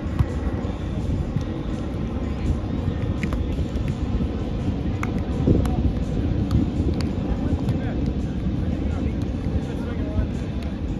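Steady low rumble of wind buffeting the microphone, with faint voices in the background and a few light, sharp clicks.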